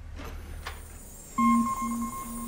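Electronic tone from a laser explosive-detection simulation starts about one and a half seconds in: a steady high beep, with a lower tone pulsing about twice a second beneath it.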